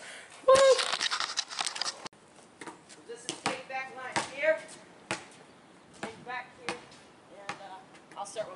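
A basketball bouncing on a concrete driveway: a few separate thumps spaced about a second apart, with faint voices calling out between them.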